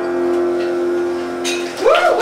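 The last chord of a song on piano and acoustic guitar, held and ringing out steadily. Near the end the audience breaks in with a whoop as cheering begins.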